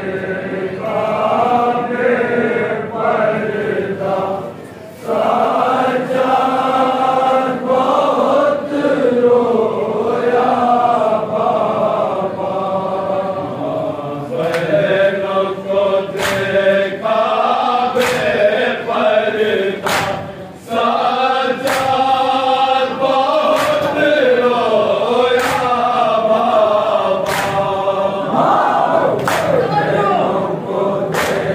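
A crowd of men chanting a noha, a Shia mourning lament, in unison, with short breaks between lines. From about halfway through, repeated sharp slaps cut into the chanting: hand strokes on bare chests (matam) keeping time with the lament.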